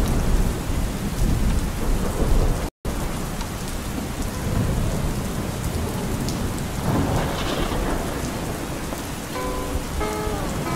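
Steady rain with a low rumble of thunder, cutting out for an instant nearly three seconds in. A few short pitched tones come in near the end.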